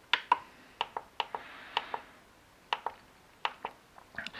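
Plastic clicks from a FlySky FS-ST16 radio transmitter's scroll wheel and buttons as its menus are stepped through: about a dozen sharp clicks at irregular intervals, several in quick pairs.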